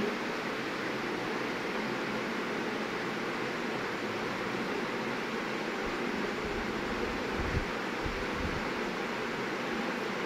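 Sugar syrup at a full rolling boil in a kadhai over a gas flame, a steady bubbling hiss as the chashni thickens to readiness. A few soft low thumps about two-thirds of the way through.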